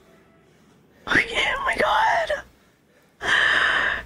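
A woman's wordless vocal reaction: a high voiced sound that glides up and down for about a second and a half, then a breathy burst of air near the end.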